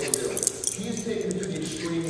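Metal tags on dogs' collars jingling in scattered quick clinks as small dogs play-fight, with voices talking in the background.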